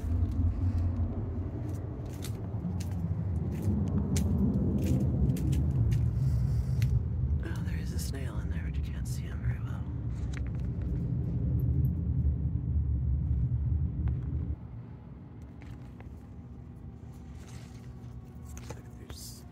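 A steady low rumble that drops away suddenly about fourteen seconds in, with scattered light clicks throughout.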